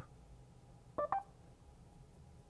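Two short electronic beeps, a fraction of a second apart, about a second in, from the Mercedes CLA 250e's MBUX voice assistant while it handles a spoken request; otherwise near silence in the car cabin.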